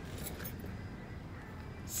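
Low steady rumble and hum of a car's interior, with no distinct event standing out.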